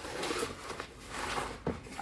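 Sewing scissors cutting through a sheet of cardboard in two stretches of cutting, then a single sharp click near the end.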